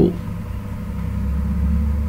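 A low, steady background rumble, growing a little stronger about a second in, with a faint steady hum above it.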